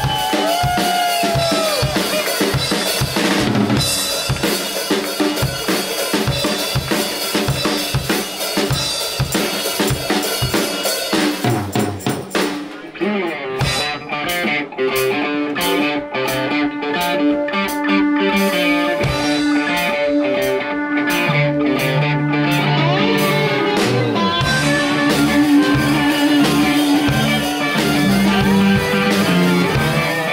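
Live blues-rock band playing an instrumental passage: drum kit, electric guitars and bass. About twelve seconds in the cymbals drop out and the band plays quieter, then builds back up.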